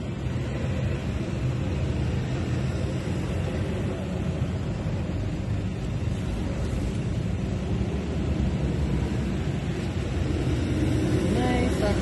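Steady low engine and road rumble heard from inside a car creeping along in slow motorway traffic. A voice comes in near the end.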